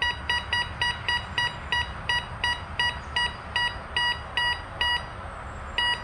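Bounty Hunter Mach 1 metal detector giving its high target tone for a silver quarter: a run of short beeps, about three a second and slowly spacing out, then a pause and one last beep near the end. The high tone marks a high-conductivity target in the detector's number four category.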